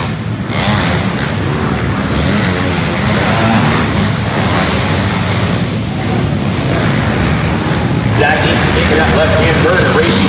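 Several small pit bike engines running at race pace together around a dirt track, a dense, steady engine noise with no single bike standing out.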